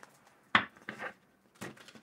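A handmade deck of cards being handled and shuffled on a table. There is a sharp tap about half a second in, then a few lighter clicks of cards near the middle and again near the end.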